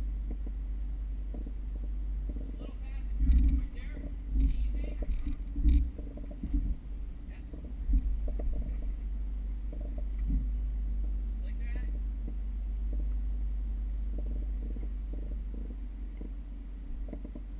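Mercedes G320 off-roader crawling slowly over rough ground: a steady low engine and drivetrain rumble, with a run of heavy thumps and knocks from about three to eight seconds in.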